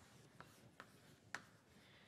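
Chalk writing on a blackboard, very faint: three light taps of the chalk, the last and loudest a little past halfway.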